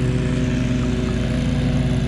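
Riding lawn mower engine running at a steady speed while cutting grass: a constant engine hum.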